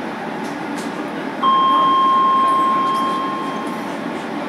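Docklands Light Railway B2007 Stock train running along the track. About a second and a half in, a single steady electronic beep sounds for about two seconds and then fades away.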